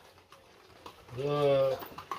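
Mostly quiet, then about a second in a man's voice holds one low drawn-out vowel, like a hesitating 'uhh', for about half a second.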